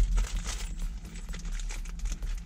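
Rustling and a run of small, irregular clicks as bolts and lock washers are handled, over a low steady hum.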